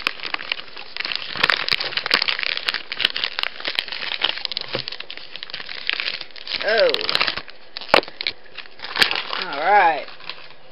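A plastic mailing bag being ripped open and crinkled by hand: a dense run of crackling and rustling for the first six seconds or so, then a few sharp separate clicks as the contents are pulled out.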